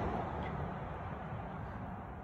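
Faint outdoor background noise: a low rumble and hiss with no distinct event, easing slightly.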